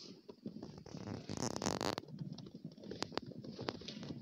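Footsteps crunching in fresh snow, with irregular rustling, and a louder rush of noise about halfway through. A few sharp clicks come near the end.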